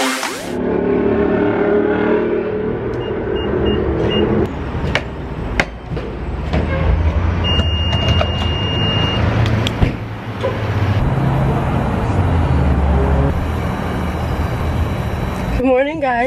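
Gas pump at a filling station: four short electronic beeps from the pump, a longer steady beep a few seconds later, and a few sharp clicks, over a steady low rumble of engines and traffic.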